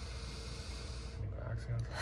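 A person drawing one deep inhale through the nose, a steady breathy hiss that lasts about a second and stops a little after the middle.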